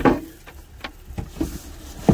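Steel soil-sampling probe being picked up and handled on a steel truck floor: one sharp metal knock, then a few lighter knocks and clinks about a second in.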